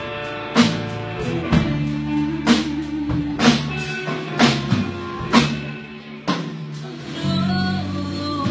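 Live rock band playing an instrumental passage: electric guitar chords and notes over bass and drums, with a sharp drum hit about once a second. The band thins out briefly near the end before new held guitar notes come in.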